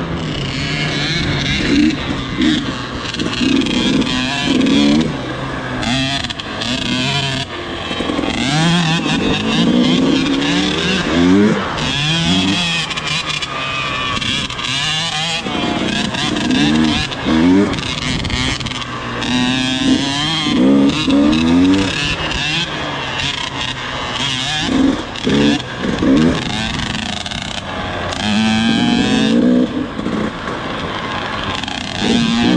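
KTM dirt bike engine heard from the rider's seat, its pitch rising and falling again and again as the throttle is opened and eased off, over wind and tyre noise on the gravel trail.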